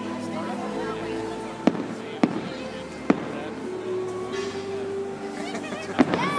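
Fireworks shells bursting overhead: three sharp bangs in the first half, the loudest sounds here, over a continuous background of music and voices.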